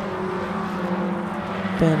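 BMW E36 race cars' engines running at a steady note as a group of cars comes past on track.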